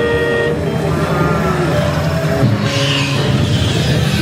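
Dark-ride show soundtrack heard from a moving ride vehicle: a held horn-like tone in the first half-second, then shorter pitched effects and music over a steady low rumble.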